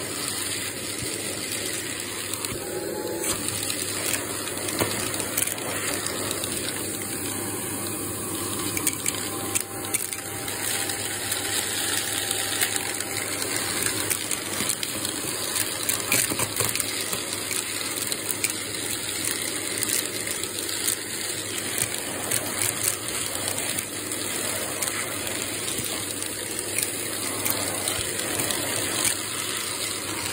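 Shark vacuum cleaner running steadily on suction through its crevice tool. Frequent small clicks and rattles come through as bits of debris are sucked off the carpet.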